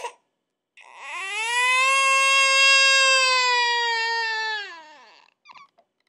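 A toddler crying: one long wail held at a steady pitch for about four seconds, dropping in pitch and fading as it ends.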